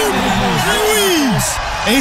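Excited men's voices calling out over a background music bed.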